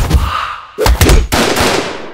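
Loud sound-effect impact hits. A sudden hit lands right at the start and fades out, then two or three more sharp hits come about a second in and fade away near the end.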